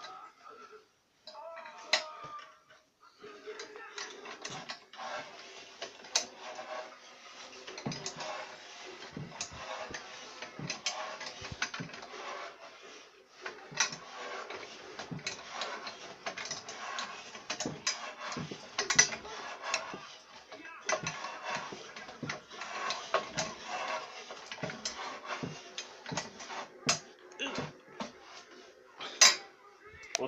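Homemade pipe bender working a steel pipe: a long run of irregular metallic clicks and creaks from the mechanism as the pipe is worked through and bent. A faint steady hum runs underneath.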